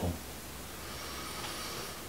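Quiet room tone: a faint steady hiss with no distinct event.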